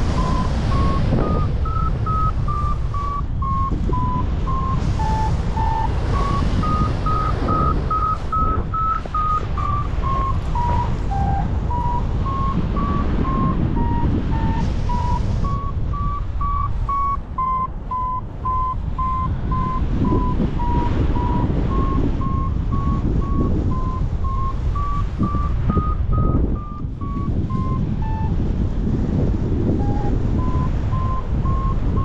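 Paragliding variometer beeping in short, evenly spaced tones about two a second, the pitch stepping up and down around a high tone as the climb rate varies: the sign of the glider climbing in thermal lift. Loud wind rush over the microphone from the flight runs underneath throughout.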